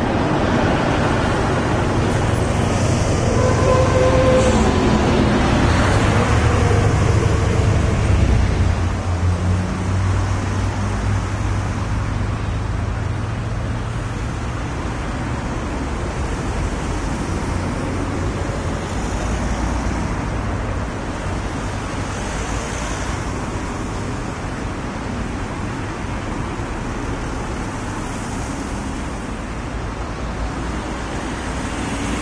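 Motorway traffic: a continuous rush of tyres and engines from cars and trucks passing at speed. A heavier, lower engine hum stands out for the first eight seconds or so, then the rush settles, with single cars swelling past now and then.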